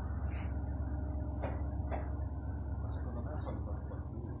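Steady low rumble of a Minuetto diesel railcar's engines as the train pulls away down the line.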